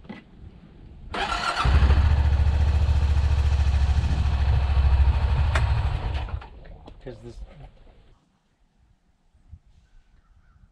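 A 2014 Honda Pioneer 700's single-cylinder engine is started. It runs with a rapid, even pulsing for about four seconds and then shuts off suddenly.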